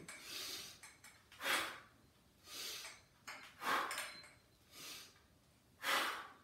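A man breathing audibly in and out through his mouth while doing slow squats holding a resistance band. There are six soft breaths, about one a second, and every second one is louder.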